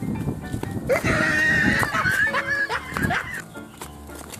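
Background music, with a loud wavering cry laid over it from about a second in until about three and a half seconds in, its pitch sliding up and down.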